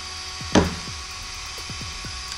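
A single short knock about half a second in, then low steady background noise.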